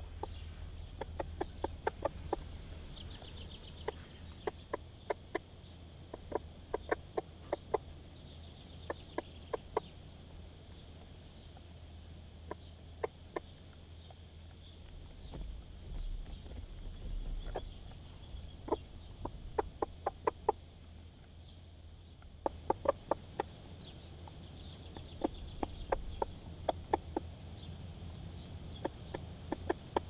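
Broody hen clucking in quick runs of low clucks every few seconds, the brooding call she uses to gather her chicks, over a steady series of short, high peeps from the Temminck's tragopan chicks under her.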